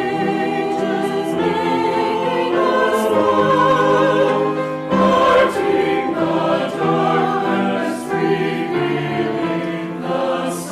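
Mixed church choir singing in harmony, holding chords that change every second or so.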